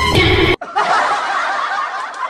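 Background music cuts off abruptly about half a second in, followed by a laughter sound effect: several people snickering and chuckling.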